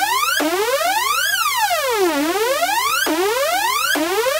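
A synthesizer tone in a club dance mix sweeping up and down in pitch like a siren, about a second each way, with no beat under it. Twice it snaps suddenly from high back down to low and starts rising again.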